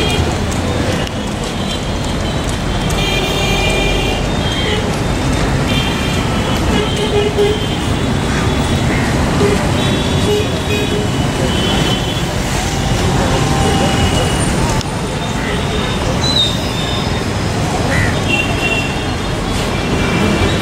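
Steady road-traffic noise with repeated vehicle horn toots and the voices of people talking in the background.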